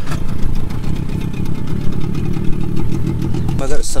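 Small outboard motor, pull-started by hand, running steadily with a rapid even beat. A man's voice comes in near the end.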